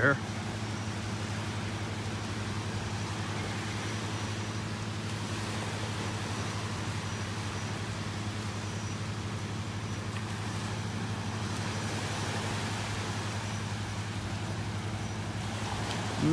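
Gentle surf washing over a shallow sandbar, with a steady low machine drone underneath.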